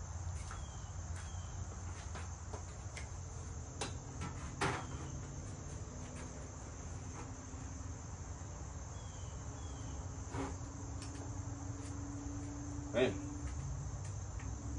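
Steady high-pitched chirring of insects, with a few sharp clicks and knocks as the grill's power cord and controls are handled, and a faint low hum through the middle.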